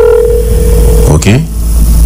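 A telephone ringback tone heard through a phone's speaker, one steady tone that stops about a second in, over a steady low rumble.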